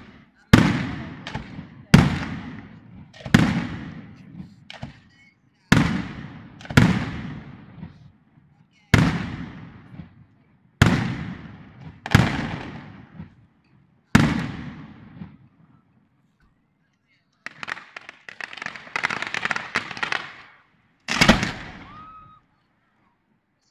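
Fireworks going off in a series of loud single bangs, about one every one to two seconds, each with a long echoing tail. Near the end comes a few seconds of dense crackling, then one more bang.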